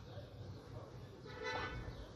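A faint, brief pitched toot about a second and a half in, over a low steady hum.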